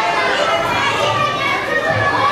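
A room full of children talking and calling out at once, many voices overlapping.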